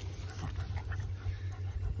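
A dog panting, over a steady low rumble.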